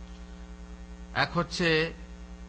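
Steady electrical mains hum from the microphone and sound system, a constant low buzz of even tones. About a second in, a man's voice briefly speaks over it.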